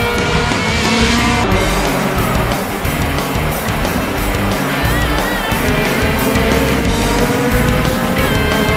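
Racing touring cars running at speed on a circuit, their engines and tyres heard mixed with loud hard-rock background music.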